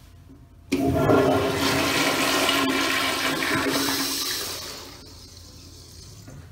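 An American Standard Afwall wall-hung toilet being flushed by its flushometer valve. A loud rush of water starts suddenly about a second in and runs for about four seconds. It then falls to a quieter swirl of water draining from the bowl near the end.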